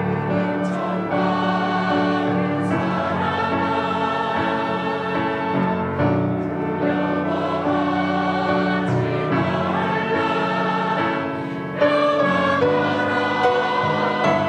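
Mixed church choir singing a Korean anthem in parts, with a flute playing along. The sound swells louder about twelve seconds in.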